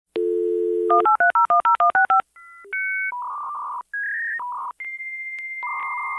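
Dial-up modem connecting over a phone line. A steady dial tone is followed by a fast run of about ten touch-tone digits, then a sequence of electronic tones that ends on a long steady high answer tone.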